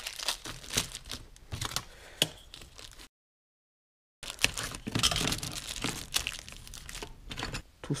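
A small plastic parts bag being crinkled, rustled and opened by hand in irregular handling noises. The sound breaks off into a second of dead silence in the middle.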